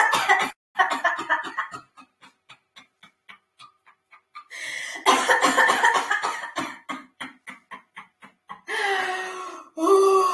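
A woman coughing on purpose in forceful bursts, with short sharp exhalations in between: a laughter-yoga exercise of coughing out the last of an imagined illness. A drawn-out voiced cry comes near the end.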